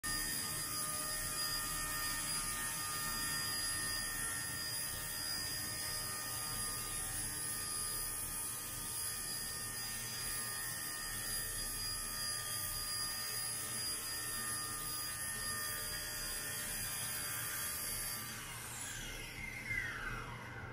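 XK K110 micro RC helicopter's electric motors and rotor giving a steady high whine in flight, then winding down in a falling whine near the end as it lands and powers off.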